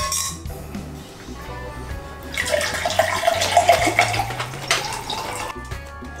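Water poured from a plastic bottle into a drinking glass for about three seconds, starting a couple of seconds in, over background music.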